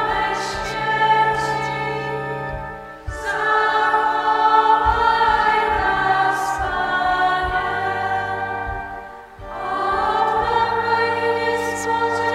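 A choir singing in long held phrases, with a short break about three seconds in and another near nine seconds.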